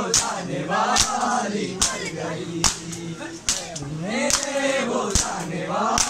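Men's voices chanting a Shia noha, a Muharram mourning lament, together with matam: open-palm strikes on bare chests in a steady beat a little under one a second, marking the rhythm of the chant.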